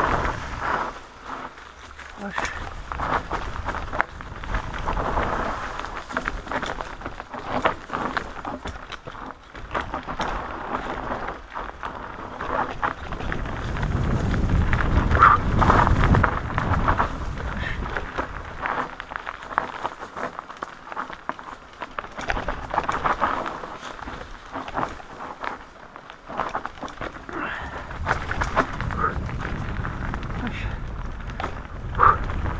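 Mountain bike descending a rough, technical forest singletrack: tyres rolling over dirt and roots, with frequent knocks and rattles from the bike and a low rumble of wind on the microphone that is loudest about halfway through.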